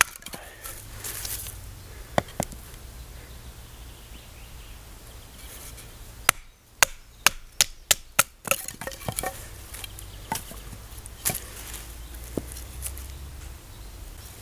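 Wooden baton striking the spine of a knife to drive it through a fresh log and split it lengthwise into quarters. Sharp knocks, a few spaced out at first, then a quick run of about eight strikes around the middle, then a handful more further apart.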